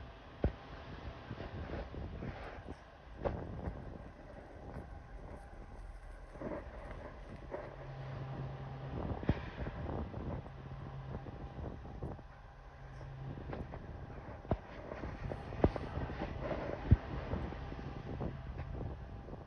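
Distant diesel locomotives of a Norfolk Southern freight train approaching, a low steady engine drone that comes in about seven seconds in, over wind noise on the microphone. A few sharp clicks stand out, the loudest near the end.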